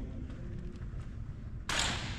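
Steady hum of a large gym, then near the end a short, sudden rush of noise as a thrown football hits the target.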